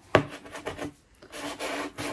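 A Faber-Castell soft pastel stick scraped across corrugated cardboard in test strokes, a short scratchy stroke near the start and a longer one in the second half.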